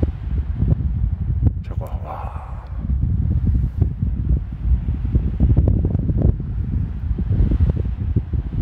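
Wind blowing across the microphone at the canyon rim: a loud, gusting low rumble that rises and falls, with a fainter rushing hiss above it.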